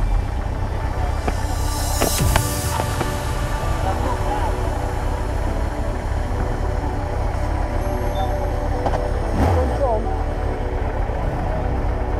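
Motorcycle engine running with a low, steady rumble at walking pace, with people's voices around it.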